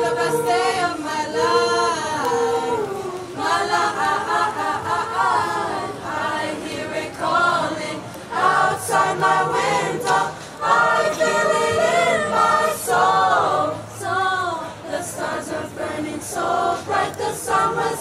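Mixed-voice high school choir singing, in phrases with short breaks between them.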